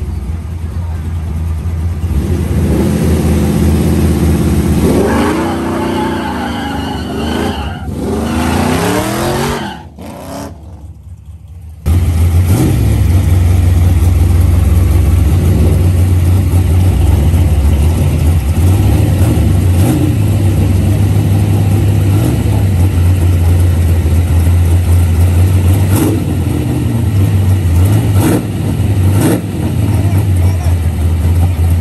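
Car engine revved repeatedly, its pitch climbing and falling for several seconds before dropping away. Then a loud, steady low engine rumble with small bumps every couple of seconds.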